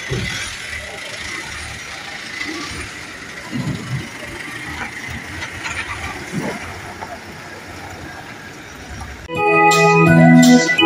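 Outdoor noise of vehicles on a road with faint voices. About nine seconds in, electronic organ music starts and gets louder.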